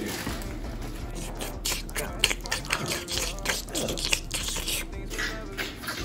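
Plastic popsicle wrapper being torn open and crinkled in the hands, a run of short sharp rustles.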